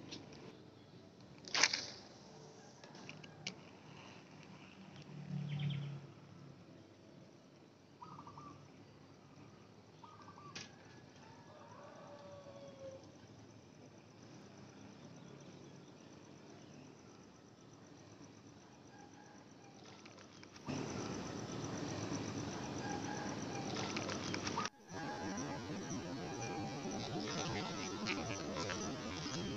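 Quiet outdoor ambience with a sharp click, a few smaller clicks and a short dull thump early on, and brief bird chirps in the middle. About twenty seconds in, a louder, steady rustling noise starts abruptly, broken once by a short gap.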